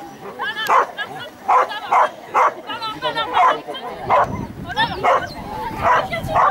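A dog barking repeatedly, about nine sharp barks spread over six seconds, with higher yips between them.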